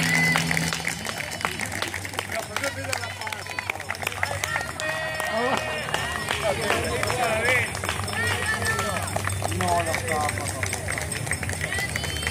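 The band's final held notes die away within the first second, then voices talk and call out in a crowd, with scattered sharp claps and knocks.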